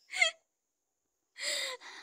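A woman's short breathy laughs: a sharp burst right at the start, then another about a second and a half in.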